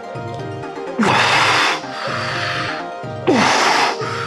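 Background music, broken twice by loud hissing bursts of about a second each: forceful, strained exhales through the teeth of someone holding a heavy weight by grip strength.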